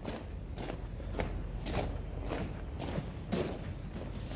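Footsteps crunching on a gravel floor, about two steps a second.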